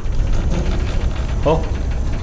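A steady low rumbling drone from the trailer's sound design, with a man's short "Oh" about one and a half seconds in.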